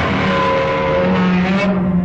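A loud, harsh noise over low orchestral music, cutting off sharply near the end; the low strings carry on.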